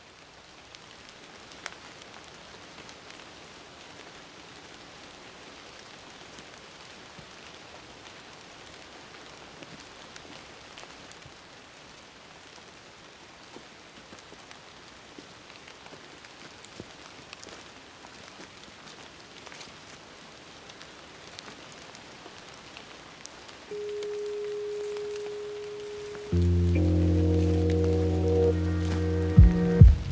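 Steady patter of water drops falling on leaves in a wet forest, with scattered single drips. Near the end a held musical note comes in, then much louder music with deep bass notes.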